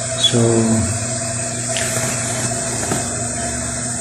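A steady machine-like hum with a constant hiss running underneath, unchanging in pitch and level.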